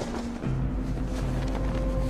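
Steady rushing roar with a deep rumble from a wind-tunnel parachute test as the parachute is fired out and inflates in the airflow. A music score with long held low notes plays under it.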